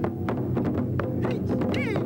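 Taiko drum ensemble playing: sharp drum strikes several times a second over a low ringing, with a high sliding call near the end.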